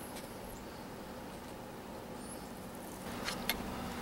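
Quiet outdoor ambience: a faint steady low hum, with a few light clicks a little past three seconds in.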